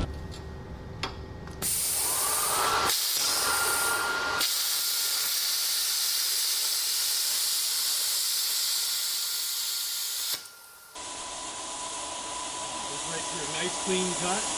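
Thermal Dynamics Cutmaster 60i X plasma cutter cutting eighth-inch mild steel: the air-plasma arc starts with a hiss about a second and a half in, stutters briefly, then runs as a steady loud hiss for about six seconds. It cuts off sharply near the ten-second mark, and a quieter air hiss follows.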